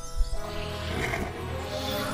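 Cartoon magic-spell sound effect, a noisy shimmering swell that builds from about half a second in, over the episode's background music.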